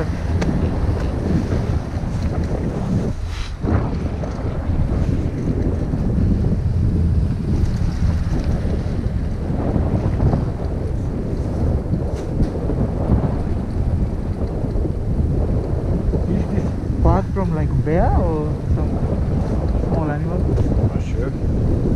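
Wind buffeting a microphone on a moving chairlift: a steady low rumble with a brief lull about three seconds in.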